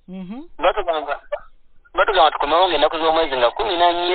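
Speech: a person talking, the voice thin and cut off above the middle range, as over a telephone line.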